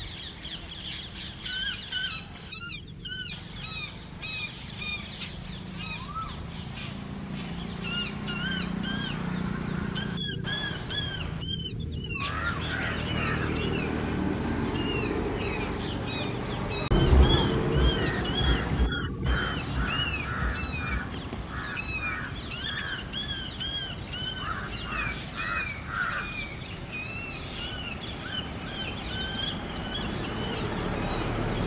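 Several birds calling in agitation: a dense, overlapping stream of short, repeated chirping and squawking notes, the calls of crows and babblers mobbing an Asian koel. A loud low thud and rumble comes about halfway through.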